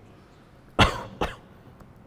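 A person coughing: one strong cough about a second in, followed by a shorter second one.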